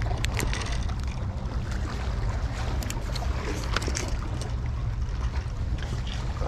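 Wind buffeting the microphone, a steady low rumble, with a few light clicks scattered through it.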